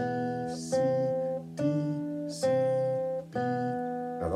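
Classical guitar played fingerstyle: a slow line of single plucked notes, a new note about every second, each left to ring.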